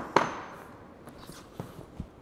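A single sharp metallic knock with a short ring, from a metal multi-tool's Allen key striking the wheel's valve and rim, followed by a few faint clicks.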